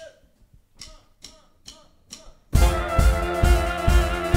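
Four short, evenly spaced count-in beats, then about two and a half seconds in a live big band with a brass and saxophone section, bass and drum kit comes in loudly, playing an up-tempo Schlager song intro with a steady beat.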